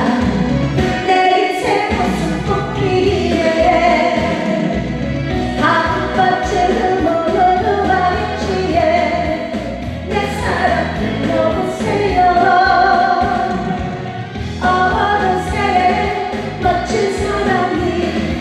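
A woman singing a Korean trot song into a microphone over a recorded backing band, in sung phrases that break briefly every four to five seconds.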